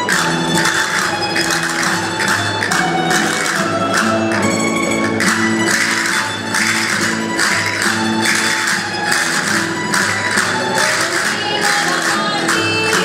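Aragonese jota played live by a rondalla of plucked string instruments, bandurrias, lutes and guitars, with a steady lively rhythm. Castanets played by the dancers click along with the beat.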